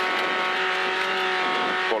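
Renault Clio rally car's engine held at steady high revs, heard from inside the cabin, with road noise underneath.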